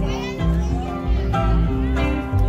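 A live string band of double bass, mandolin and electric guitar playing a song, with a steady bass line underneath. High voices chatter over the music near the start.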